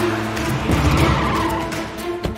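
Car tyres screeching in a hard skid, a dramatic accident sound effect, over background music.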